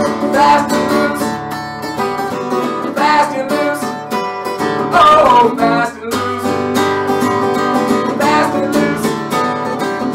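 Acoustic guitar strummed in a steady, driving rhythm through an instrumental break of an up-tempo song, with a short falling slide in pitch about five seconds in.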